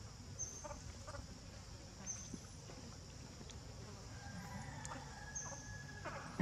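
Faint outdoor ambience in which a bird's short, high whistled call comes three times, with a few soft clicks and a low rumble beneath.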